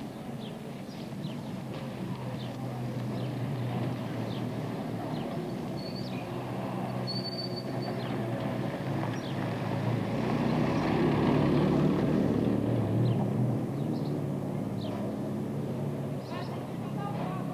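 A small car's engine running as a Dacia saloon drives by on the street, growing louder to a peak about two-thirds of the way through, then easing off. Birds chirp throughout.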